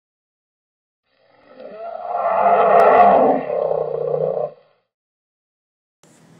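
A loud roar that swells in about a second in, peaks near three seconds with a brief click, and cuts off sharply a little after four and a half seconds.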